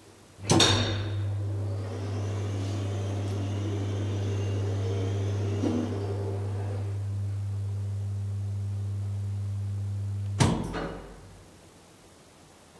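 1980s KONE hydraulic elevator setting off with a clunk, running with a steady low hum and a faint hiss as the car descends one floor, then stopping with another clunk about ten seconds in.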